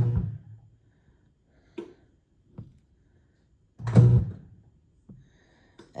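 Zojirushi Virtuoso Plus bread machine knocking down the rising dough: the kneading motor and paddles turn in short bursts, a brief low whir at the start and a louder one about four seconds in, with two faint knocks between.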